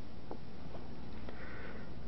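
A man sniffing faintly in a pause in his speech, overcome with emotion, with a few faint clicks, over the steady hum and hiss of an old tape recording.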